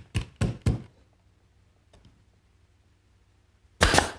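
Brad nailer driving brads to fasten a drawer back: four sharp shots in quick succession, then a louder bang near the end.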